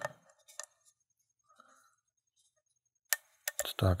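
Small metallic clicks of a thin steel lock pick working the pins of a five-pin Eagle Lock pin-tumbler cylinder under tension: a few faint ticks in the first second, then a cluster of sharper clicks about three seconds in.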